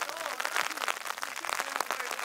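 Men's voices calling out across an outdoor football training session, mixed with scattered sharp smacks and clicks over a steady hiss.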